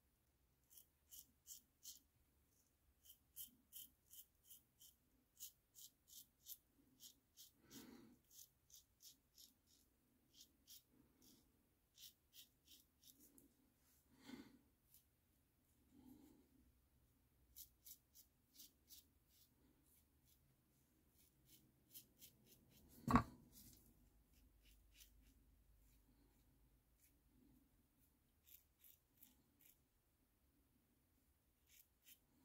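Gillette Super Speed double-edge safety razor scraping through a day's stubble over lather, in quick short strokes of about three a second, in runs with brief pauses. The blade is a Perma-Sharp on its second use. One louder knock comes about three-quarters of the way through.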